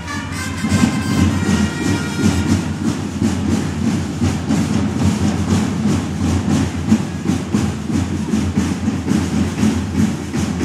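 Parade drums beating in a dense, rolling rhythm, with a brass fanfare note dying away in the first two seconds.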